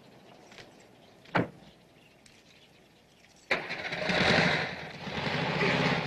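A car door shuts with a single thump about a second and a half in. About three and a half seconds in, the car's engine starts suddenly and keeps running.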